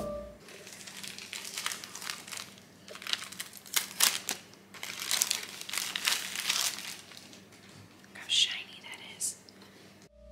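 Plastic packaging crinkling and rustling in a run of short, irregular crackles as a new coffee machine's drip tray and parts are unwrapped by hand.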